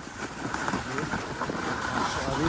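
A snowboard sliding and scraping down a snowy slope, with a steady rush of wind on the microphone. Indistinct voices sound over it.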